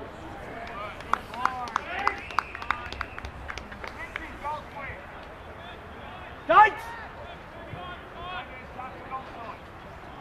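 Players and onlookers shouting short calls at a tackle on a football ground, with a quick run of sharp claps in the first few seconds. One loud rising shout about six and a half seconds in stands out above the rest.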